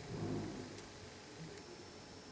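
Quiet room tone in a lecture room, with a brief low vocal sound trailing off in the first half-second and a faint click a little under a second in.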